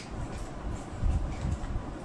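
Low, irregular thuds and rumble of footsteps and body movement close to the microphone, with a few faint clicks.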